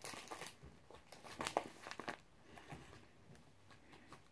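Cigarette and tobacco packs being rummaged through and handled: faint, scattered crinkling and rustling of their wrapping, with a few light clicks.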